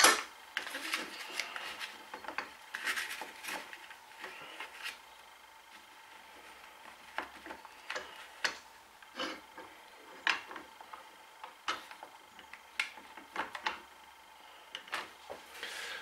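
Clamps being adjusted and tightened around a glued-up wooden joint: scattered light clicks and knocks with some rubbing, busier in the first few seconds and sparser after that.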